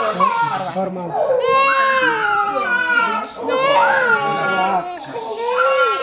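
A small child crying loudly in long wails, each cry drawn out for a second or two and falling in pitch, with short breaks for breath between them, while its foot is held and taped.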